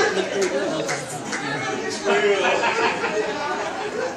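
Indistinct chatter: several voices talking over one another in a hall.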